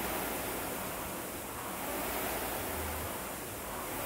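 Air-resistance rowing machine, its fan flywheel whooshing in a steady rhythm that swells with each drive stroke about every two seconds.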